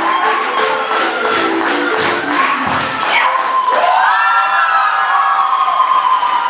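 Closing bars of a song's backing music with a steady beat, about four strokes a second, while a small group of people cheers. Near the end the beat gives way to long held voices.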